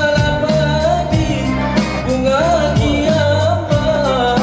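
Live band playing a pop song: strummed acoustic guitar, keyboard, electric guitars and bass under a singer's voice, with a steady beat.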